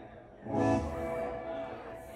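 Electric guitar chord struck hard about half a second in and left ringing, slowly fading, through the stage amplification.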